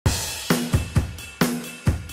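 Music: a drum kit beat, with kick and snare hits ringing into cymbal wash, one hit every quarter to half second.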